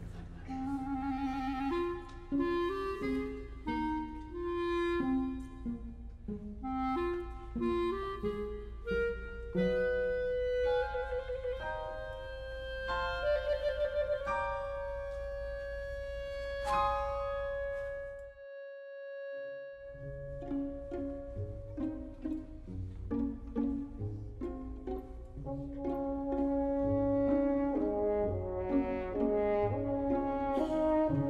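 Live symphony orchestra playing a film score: short, separated notes, then one long held note across the middle, a brief break a little past halfway, and the music picking up again.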